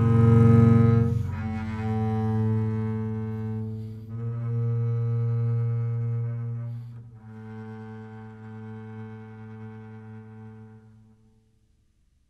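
Double bass played with the bow: a few long sustained notes, the last one softer and fading away to silence about eleven seconds in.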